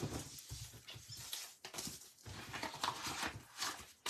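Faint rustling of a clear plastic stamp-set envelope as a stamp carrier sheet with a foam square is slid back into it, in a few soft, scattered scrapes.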